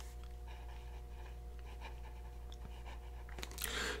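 Faint scratching of a Lamy 2000's fine gold nib writing on paper, over a steady low hum. A breath is drawn near the end.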